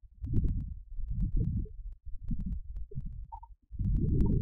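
Low, uneven rumbling in irregular pulses, with scattered faint clicks.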